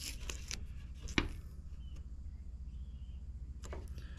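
Light handling clicks and one sharp tap about a second in, as a hand works over an old cracked fiberglass truck grill, over a steady low background hum.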